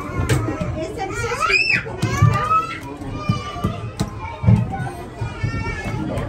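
Young children's excited voices and chatter, with one child's short high-pitched squeal that rises and falls about one and a half seconds in.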